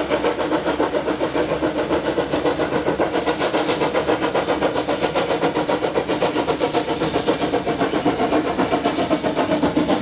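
Queensland Railways C17 class steam locomotive No. 967, a two-cylinder 4-8-0, chuffing in a rapid, even beat as it hauls its train.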